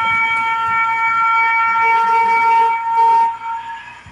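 Shofar (ram's horn) sounding one long, steady held blast that fades out shortly before the end.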